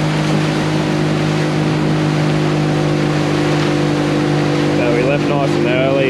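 Outboard motor of a Haines Hunter 445F runabout running steadily at cruising speed, a constant drone over the rush of water and wind as the boat planes along.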